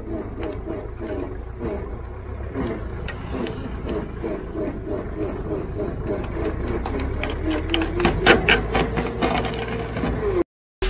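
Shaft-driven wood chipper running with a low, steady rumble and a regular chugging beat while branches fed into its hopper crack and snap; the crunching of wood grows busier in the last few seconds.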